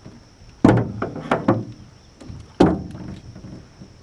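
Sudden hollow knocks and thumps: a heavy one under a second in, several lighter knocks just after it, and another heavy one near the middle, over a steady thin high tone.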